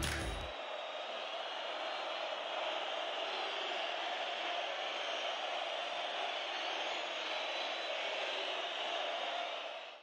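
A steady, even noise with no distinct events, fading out at the very end.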